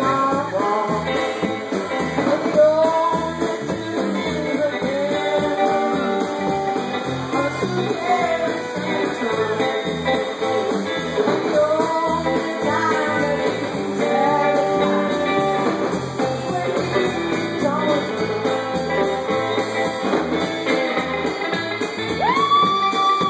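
Live country-rockabilly band: a woman singing lead over electric bass, drums and electric guitar.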